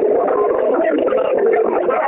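Many callers' voices overlapping at once on a telephone conference line, with all participants unmuted, as in group prayer. The sound is continuous, thin and narrow like phone audio, with no single voice standing out.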